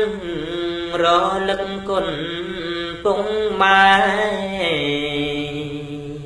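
Khmer smot, Buddhist chanting sung by a solo voice: slow, drawn-out melismatic notes that slide between pitches, with the line stepping down to a lower pitch about two-thirds of the way through.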